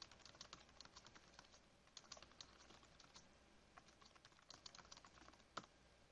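Faint computer keyboard typing: a quick, irregular run of key clicks as a line of text is typed.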